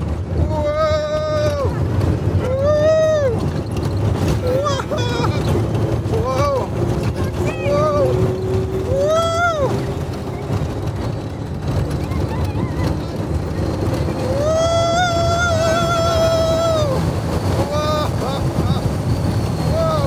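A Test Track ride vehicle speeding round the outdoor high-speed loop, with a steady rush of wind and rumble on the microphone. Over it come repeated short rising-and-falling whoops from riders, and one long drawn-out whoop near the end.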